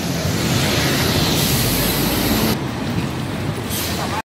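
City bus passing close by, its engine rumble and road noise loud over general traffic. The noise eases a little about two and a half seconds in.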